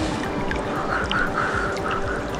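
A bird calling: a quick run of about six short, raspy calls starting a little under a second in, heard over background music.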